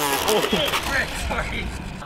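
A small electric RC airplane crashing: its motor's high whine cuts off with a sharp impact, followed by scattered clattering knocks and brief shouts from people nearby.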